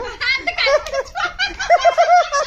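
People laughing, a woman's laugh among them, with quick repeated laughs in the second half.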